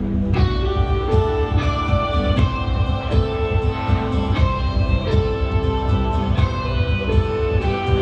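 Live rock band starting a song: an electric guitar begins picking a repeating pattern of ringing single notes about a third of a second in, over a low sustained drone.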